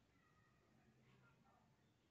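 Near silence, with a few faint wavering pitched sounds.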